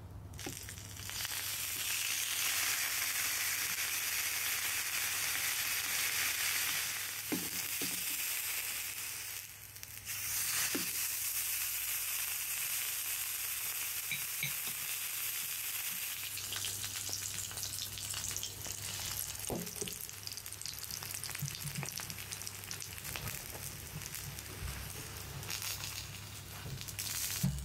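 Steak frying in a small pan on an electric hot plate: a steady sizzling hiss that rises about a second in and drops out briefly about ten seconds in before carrying on.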